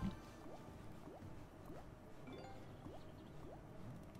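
Faint slot game audio from Big Bass Amazon Xtreme: a string of short rising, bubble-like bloops about every half second over quiet game music.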